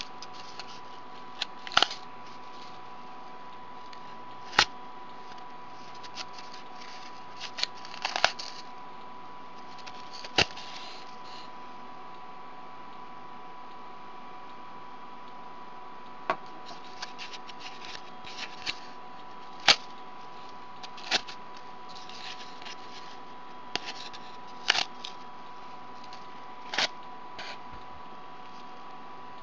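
Yarn strands being pulled and slipped into the notches of a cardboard weaving loom: sharp clicks and short scratchy rustles every few seconds, over a faint steady electrical whine.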